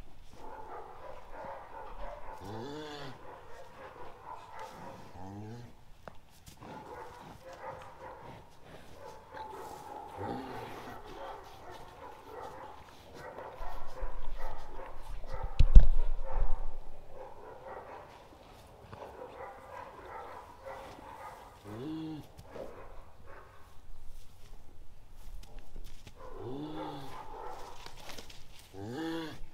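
Jersey cow giving short, low calls to her newborn calf several times, each sliding in pitch. Around the middle a loud dull bump, as of something knocking against the microphone.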